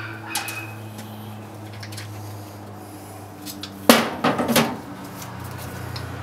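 Needle-nose pliers and small broken pieces of hard plastic Duplo set down on a steel tool chest top: one sharp clack about four seconds in, then a few lighter clicks, over a steady low hum.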